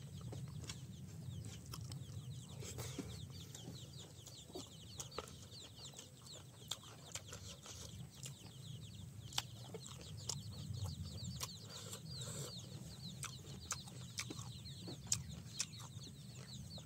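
Close-up eating sounds: fingers mixing rice on a steel plate, chewing and lip smacks heard as scattered soft clicks. Behind them runs a quick, high chirping that repeats throughout.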